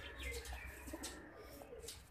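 Faint cooing of domestic pigeons.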